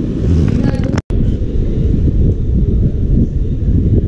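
A steady low rumble with a brief dropout to silence about a second in.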